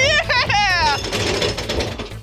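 Small roller coaster train rattling along its steel track with a steady low rumble. A man's excited vocal whoops ride over it in the first second.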